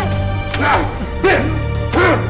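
A man's short, sharp cries, about three of them roughly two-thirds of a second apart, each rising then falling in pitch. Behind them runs background music with a steady low drone.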